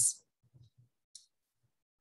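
A pause in speech: near silence broken by one short, faint click a little over a second in.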